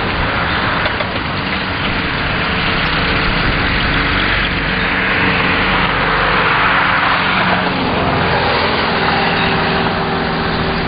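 A vehicle's engine running as it drives off on wet pavement, with a steady tyre hiss that swells a few seconds in.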